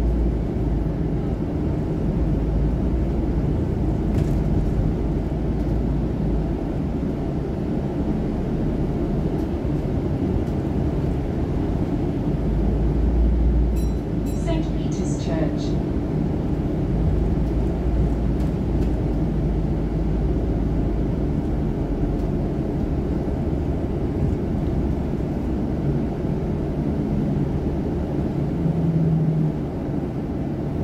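Inside a moving double-decker bus: the steady low rumble of the engine and road noise. About halfway through there is a short cluster of high ticks or chirps.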